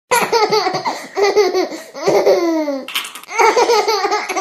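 A baby laughing in loud, high-pitched bursts, with one long falling laugh a little after halfway and a short breathy burst about three seconds in.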